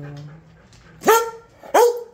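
A dog barking twice, two short sharp barks less than a second apart.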